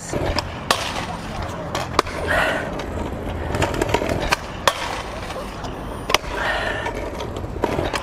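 Stunt scooter wheels rolling over brick paving: a steady rumble with sharp clacks every second or two as the wheels and deck hit joints and edges, the last near the end as the scooter meets the ledge and rail.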